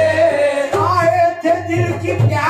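Live qawwali: a male voice holds a long sung note, then breaks into a new rising phrase about a second in, over steady instrumental accompaniment.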